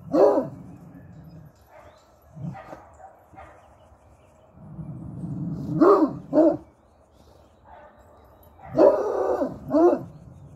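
Dog barking: one bark at the start, two close together around six seconds, and a longer bark near the end, with a low rumble just before the pair.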